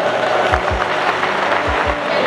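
A crowd applauding over background music whose beat is a pair of low drum thumps about once a second.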